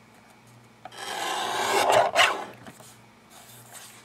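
Fiskars paper trimmer's blade carriage drawn along its rail, slicing a thin sliver off a sheet of paper: a scratchy rasp of about a second and a half that grows louder toward its end, then a faint brief rustle.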